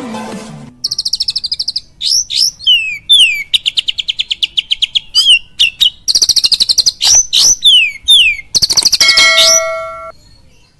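Oriental magpie-robin singing loudly: fast runs of rapid repeated chirps and sharp downward-sliding whistles, a song full of mimicked kapas tembak calls, kept as a lure (pancingan) song to set other birds singing. The tail of intro music fades out in the first second.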